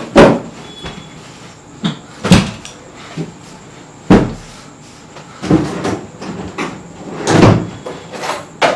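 Wooden bedroom furniture being rummaged through: headboard compartment and dresser drawers opened and shut, giving about six separate knocks and clunks, the last near the end the longest.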